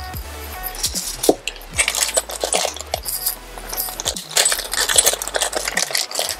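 Small metal gun parts clinking and a plastic parts bag crinkling as they are handled, many short sharp clicks throughout. Background electronic music with a steady low bass line plays underneath.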